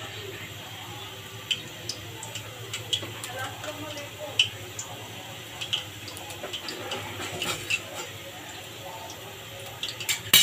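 Oil heating in an aluminium pot, giving scattered faint crackles and small pops over a steady low hum.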